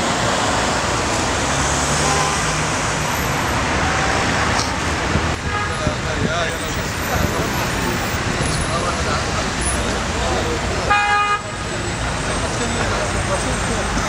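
Busy city street noise: traffic running steadily with voices in the background. A car horn gives a short toot late on, and a fainter one sounds about halfway.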